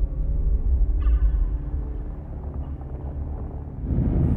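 Deep, sustained low rumble of film sound design as a giant creature looms through smoke, with a faint higher tone entering about a second in.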